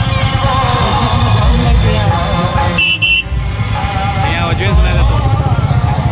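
Motorcycle and car engines running in slow, packed traffic, with a vehicle horn sounding a short toot about three seconds in, over a crowd of voices.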